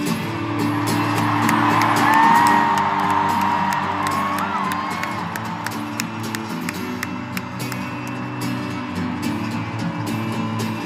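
Arena crowd cheering and whooping, swelling about two seconds in, with one long high-pitched cry rising above it, over a sustained acoustic guitar chord.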